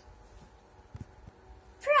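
A faint tap about halfway through, then a short high-pitched call that rises and falls near the end.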